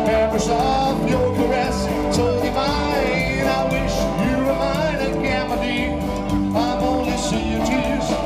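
Rock and roll band playing live, with guitar.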